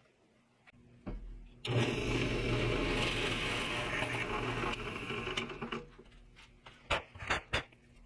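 Drill press motor starting about a second in, then a half-inch Forstner bit boring into wood for about three seconds before the drill winds down. A few sharp clicks follow near the end.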